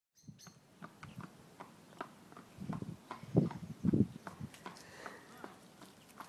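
A horse being ridden: a run of hoof falls with several louder low breaths or snorts in the middle.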